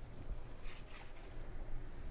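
A cloth rubbing and wiping across a metal wheel rim: a short rustling scrub about half a second in, lasting under a second, over a low steady hum.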